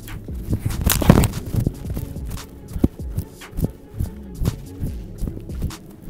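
Background music with a thumping bass beat. About a second in comes a single sharp thud: a kicker's foot striking a football off a kicking tee.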